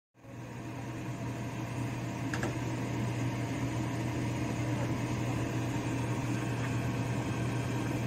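A steady low hum with an even rushing noise, as of a running fan or motor; a faint click about two and a half seconds in.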